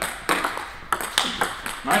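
Table tennis ball in a fast backhand-to-backhand rally: quick, sharp clicks of the celluloid ball off the rubbers and the table, about four or five a second, in an even rhythm.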